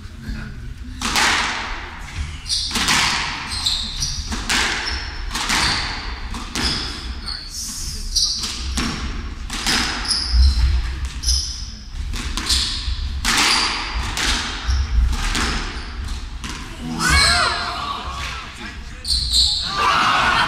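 Squash rally: the ball is struck by rackets and cracks off the court walls about once a second, each hit ringing in the hall, with short shoe squeaks on the wooden floor between the hits.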